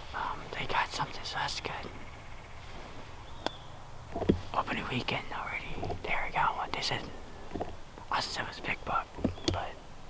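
A person whispering close to the microphone in short bursts, with brief pauses between phrases.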